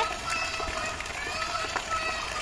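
A toddler's loud high-pitched cry breaks off at the start, then faint whimpering goes on over the steady splashing of a water jet falling into a swimming pool.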